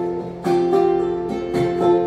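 Acoustic guitar strumming the chords of a country song, the chords ringing on between strokes. There is a brief dip, then a fresh strum about half a second in, and a few quicker strums near the end.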